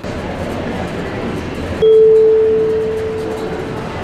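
Otis elevator hall lantern chime: a single ding about two seconds in, a steady tone that fades away slowly, over steady background noise. It signals a car arriving, its lantern lit green.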